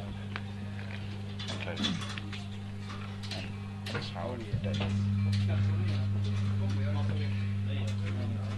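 A steady low electrical hum from the stage amplification, which gets louder about halfway through, under scattered voices and small clicks from the room between songs.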